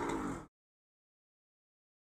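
A brief, hissy sound in the first half second that cuts off suddenly, then dead silence.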